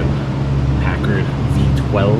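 Brief, indistinct murmured speech over a steady low hum.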